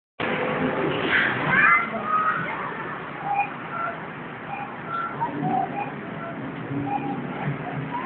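Outdoor ambience of small birds giving short, repeated chirps, over a background murmur with a brief burst of people's voices in the first couple of seconds.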